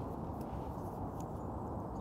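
Steady, low outdoor background noise with no distinct event, and a few faint ticks.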